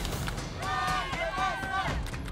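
Several people shouting and cheering encouragement from the sidelines, raised voices calling out over one another for most of the time.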